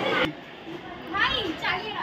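Busy chatter of several voices, cut off abruptly a moment in, then a quieter background with a couple of high-pitched voices calling out about a second later.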